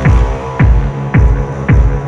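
Electronic music with a heavy kick drum whose pitch drops sharply on each hit, four beats in two seconds, over a sustained deep bass drone.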